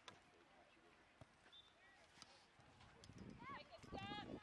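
Near silence, with a few faint soft knocks, then distant high-pitched shouting voices from the field in the last second.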